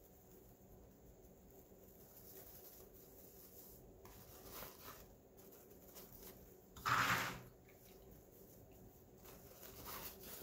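Faint rustling of wired ribbon as hands fluff out the loops of a bow, with one louder crinkle about seven seconds in.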